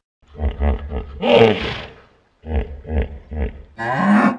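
A large animal's deep call in two bouts of rapid pulses, with a louder, higher cry in the middle of the first bout.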